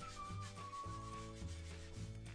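Faint rubbing of a foam sponge brush being scrubbed back and forth over canvas, working wet black gesso into the weave.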